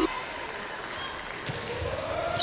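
Gymnasium crowd noise, with a single sharp smack of a volleyball being hit about one and a half seconds in.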